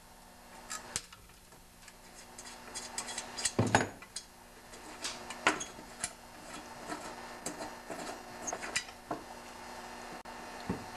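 Socket ratchet clicking as the fuel tank's bolts are undone, with knocks and clunks of the plastic tank and metal parts being handled; the loudest knock comes a little over three and a half seconds in.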